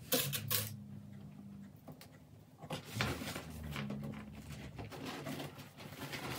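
Stiff nylon crinoline rustling and crackling as it is folded and handled, with a cluster of sharp clicks about half a second in and another about three seconds in.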